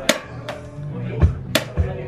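Drum beat played with sticks on an Alesis electronic drum kit: about five sharp strokes in two seconds, over steady background music.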